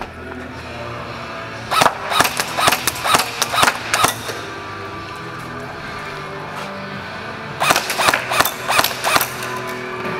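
Umarex MP5 A5 electric airsoft gun (AEG) firing two quick strings of shots, about ten then about seven, at roughly four shots a second, a few seconds apart.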